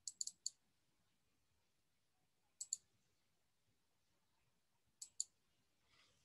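Computer mouse buttons clicking in quick clusters: about four clicks at the start, a pair midway, and another pair near the end, with near silence in between.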